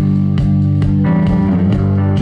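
Live blues band playing an instrumental stretch between vocal lines: electric guitar and bass over a steady drum beat.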